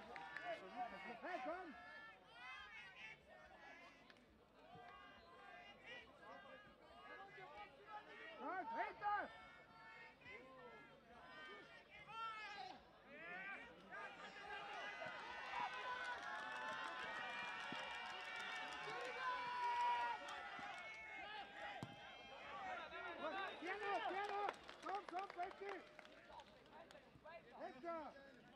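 Voices of players, bench and spectators shouting during a minifootball match. About halfway through, many voices rise together and hold for several seconds as play goes on near goal, then fall away to scattered shouts.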